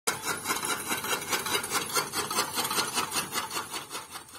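Old camel-driven chaff cutter running: a fast, even, scraping clatter of its gearing and cutting mechanism, about six or seven strokes a second.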